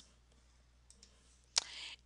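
A single computer mouse click about one and a half seconds in, followed by a brief soft hiss, against otherwise near-silent room tone.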